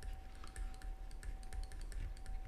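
Stylus tapping and scratching on a tablet while writing by hand: a run of light, irregular clicks, with a faint steady tone underneath.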